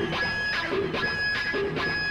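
Live rock band opening a song: electric guitar chords struck in an even rhythm, about two a second, over a steady held note.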